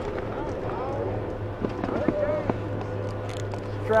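A few sharp clicks from snowboard binding ratchet straps being tightened as the rider straps in, with faint voices behind.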